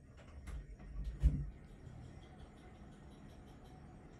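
Low rumbling with a few faint knocks, building to one heavy thump about a second in.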